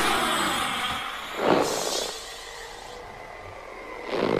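Science-fiction film sound effects: a loud hissing rush that fades over the first second, a second swelling whoosh about a second and a half in, then a faint steady hum with a thin high tone.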